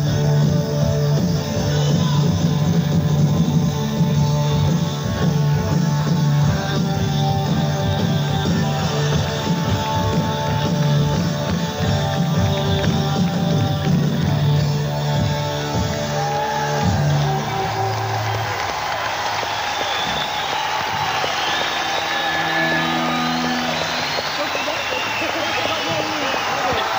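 Live rock band with electric guitar and held bass notes playing out the end of a song, stopping about 18 seconds in. The audience then cheers and whistles.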